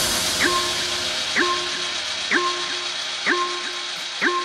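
Tech house music in a breakdown: the kick drum drops out as it begins, leaving a short synth figure repeating about once a second over a fading wash of high noise.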